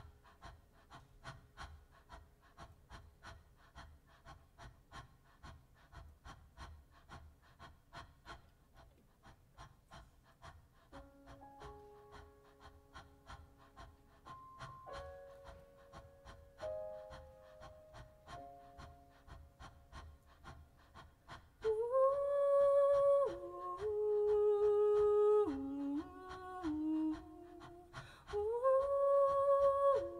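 Live song: a soft, even ticking pulse, joined about a third of the way in by soft held notes. About two-thirds in, a woman's voice enters much louder, singing long notes that slide between pitches, and it comes in again near the end.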